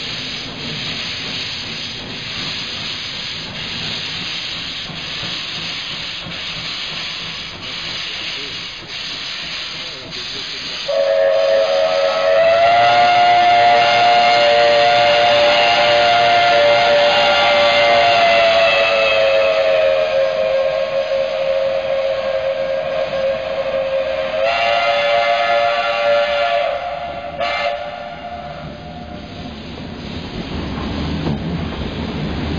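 Steam locomotive hissing steam around its cylinders as it pulls away. About eleven seconds in, its whistle sounds one long blast of some fifteen seconds: two notes together, sagging slightly in pitch and lifting again before it cuts off.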